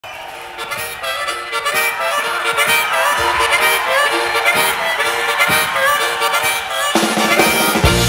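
Blues harmonica played alone in short repeated phrases; bass and drums come in about seven seconds in.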